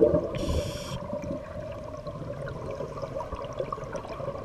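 Underwater water noise in a cenote: gurgling that fades over the first second or so, then a quieter stretch, as between a scuba diver's exhaled bubble bursts. A brief high whistle sounds near the start.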